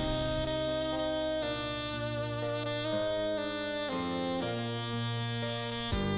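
Background music: a saxophone playing long held notes that change every second or so.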